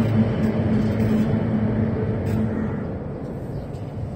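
Kyotei racing boats' two-stroke outboard engines running in a steady drone, fading out; the engine note drops away about two and a half seconds in, leaving a fainter hiss.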